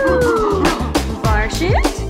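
Upbeat birthday-song music with a steady drum beat. A long held tone glides downward and ends under a second in, followed by bouncy, wobbling pitched notes.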